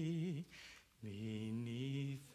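A man singing a slow hymn chorus unaccompanied in long held notes, with a short break about half a second in before a long steady note.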